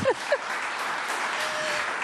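Studio audience applauding, steady clapping.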